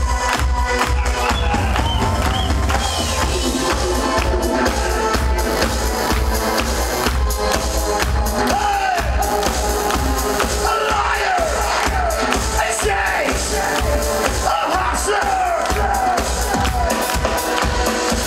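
Live EBM/future-pop band playing an instrumental passage: synthesizers over a live drum kit with a steady beat, with audience voices and cheering mixed in.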